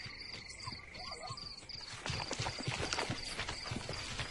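Savanna ambience in a cartoon soundtrack: insects chirping in short, evenly spaced pulses over a steady high hum. About halfway in, a fast, irregular clatter of clicks begins, like the hoofbeats of a herd.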